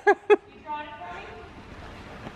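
Two short bursts of a woman's laughter, then faint talking.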